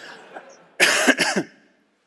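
A single cough about a second in, lasting under a second.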